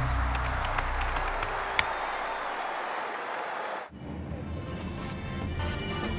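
Applause and crowd noise with a few sharp clicks, cut off suddenly about four seconds in. Background music with a steady beat takes over from there.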